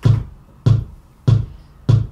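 Electronic metronome beating quarter notes at 98 beats per minute: four even beats, each a low thump with a click on top.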